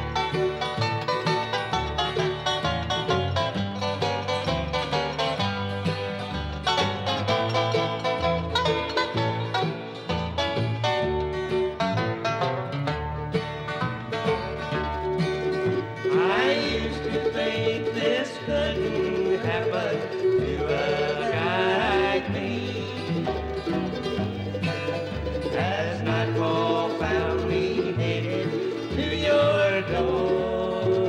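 Bluegrass band recording: fast picked banjo over guitar, mandolin and bass. About halfway through, a gliding, wavering melody line comes in over the picking.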